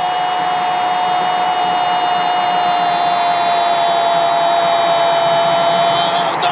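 Brazilian radio commentator's long drawn-out goal cry, "gooool": one held note that sags slightly in pitch for about six seconds and breaks off near the end.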